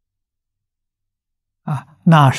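Near silence in a pause of a man's talk, broken near the end by a short voiced sound from the same man, a sigh or the first syllable as he resumes speaking.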